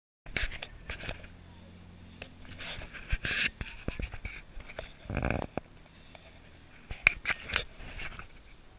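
Handling noise of an action camera being worn and moved: a run of irregular knocks, taps and scrapes, with a short burst of voice about five seconds in.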